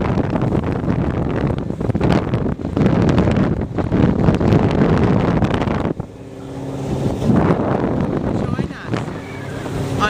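Wind buffets the microphone aboard a moving tender boat for about six seconds, then cuts off suddenly. After that the boat's engine comes through as a steady drone.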